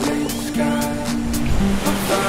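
Background music: held chords over light ticking percussion, with no low beat.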